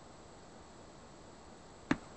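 Faint steady hiss of an open video-call audio line, with one brief click near the end.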